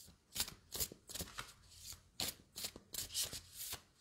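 A deck of cards shuffled overhand by hand: quick rustling swishes of cards sliding against each other, about three a second.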